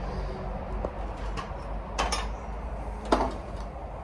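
Knocks and clinks of old metal and junk being shifted as an old metal lantern is pulled from a packed pile, the loudest a sharp knock about three seconds in.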